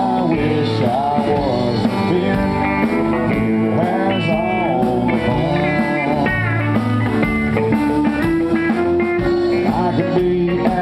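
Live country band playing an instrumental break: a lead electric guitar solo with many bent notes over a drum beat and rhythm guitar.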